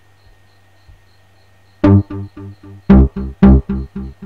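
A programmed beat played back from an FL Studio step-sequencer pattern comes in about two seconds in, with heavy kick-drum hits under short pitched notes in an even rhythm. Before it there is only a faint steady hum.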